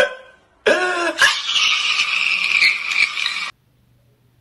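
A man's loud, harsh wailing from a crying-meme clip. It starts with a voice-like cry and breaks into a rough, noisy howl, then cuts off suddenly about three and a half seconds in.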